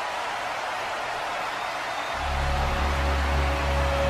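Eerie entrance music: a steady hiss, then about halfway through a low droning tone with a few held notes above it comes in and holds.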